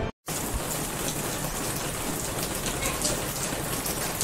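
Steady rain falling, starting after a brief gap of silence at the very start.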